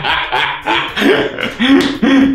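Men laughing heartily in a string of short, loud bursts.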